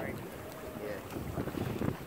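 Low wind rumble on the microphone over water moving against the side of a boat, with faint voices in the background.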